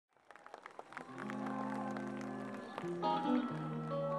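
A live band's slow instrumental intro fading in, with a few audience claps as it starts. Long held chords sound, then the notes change several times in quick steps in the second half.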